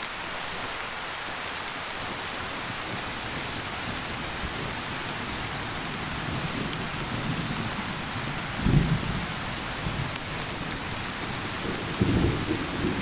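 Thunderstorm: steady rain throughout, with low thunder rumbling in past the middle and swelling to a loud peak about three-quarters of the way through, and a further rumble starting right at the end.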